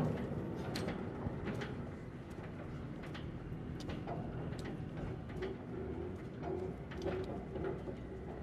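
Steel bar clinking and knocking in a deck fitting of a military raft-bridge bay as a soldier works it. A steady low engine rumble runs under it. A short series of low cooing notes comes in about five seconds in.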